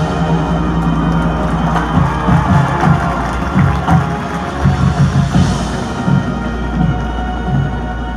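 Marching band and front ensemble playing sustained chords over a steady low bass, with irregular low hits underneath.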